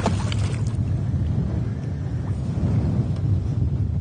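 A hooked pike splashing at the water's surface right at the start, then a steady low rumble for the rest of the time.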